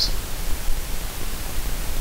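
Steady hiss with a low hum beneath it, the background noise of the lapel microphone and sound system, with no other event standing out.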